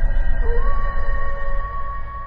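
Logo-intro sound design: a wolf howl sound effect that rises a little about half a second in and is then held as one long call, over a low rumbling drone that eases off near the end.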